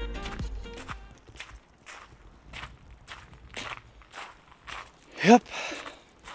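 Footsteps of a person walking on an outdoor path at about two steps a second, after background music fades out in the first second.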